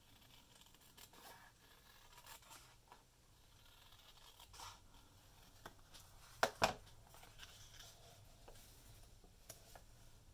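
Small scissors snipping the edge of a paper cutout, faint, with paper rustling and sliding as the cutout is handled. Two sharp clicks come close together a little after halfway.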